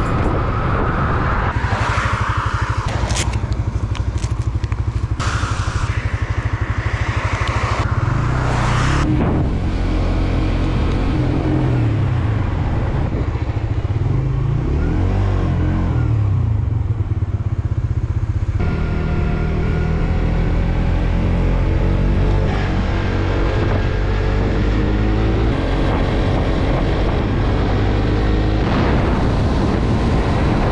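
Motorcycle engine running at road speed, its pitch rising and falling as the bike speeds up and slows, with wind and tyre noise on the wet road. The sound changes abruptly several times, as separate riding clips cut together.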